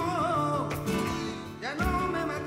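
Flamenco-style dance music: a voice singing a wavering, ornamented line over guitar, with a sharp accent near the end.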